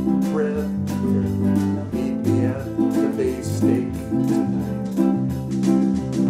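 A small band plays a mid-tempo pop song: ukuleles strum chords over an electric bass line, with drum hits keeping a steady beat.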